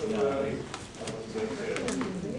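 Indistinct, low men's voices talking among themselves, too murmured to make out words, with a few small clicks in the second half.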